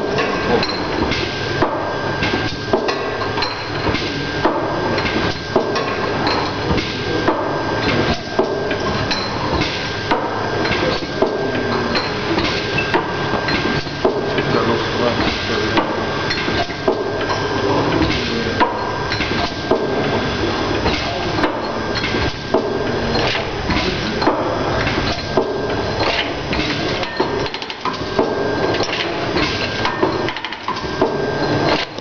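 Automatic bottle filling and capping line running: a dense, continuous clatter of glass bottles knocking and machine parts clicking as the bottles are indexed through the star wheels, over a steady high tone.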